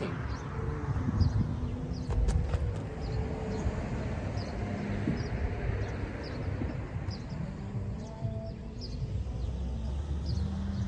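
Outdoor ambience: a steady low rumble of wind or distant traffic, with a small bird giving short high chirps about once a second. A couple of light clicks come about two seconds in.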